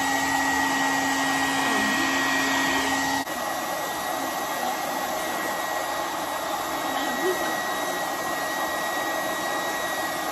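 Handheld hair dryer running steadily with a constant whirring blow. About three seconds in there is a short dip, then it carries on slightly quieter and without the low hum it had before.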